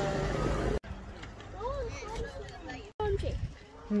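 A classic open-top sports car's engine running as it drives past close by, a low rumble that cuts off abruptly under a second in. Faint voices follow.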